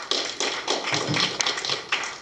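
Small audience applauding, the individual hand claps standing out among the rest.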